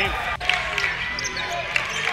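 A basketball bouncing on a hardwood gym floor amid the steady noise of the arena crowd, with a sharp break about half a second in.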